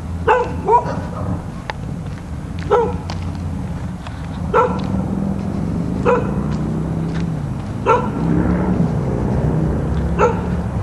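A dog barking in single sharp barks, about six of them one to two seconds apart, over a steady low rumble.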